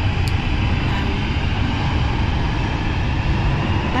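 Steady low rumble of a moving vehicle heard from inside it, loud and unbroken.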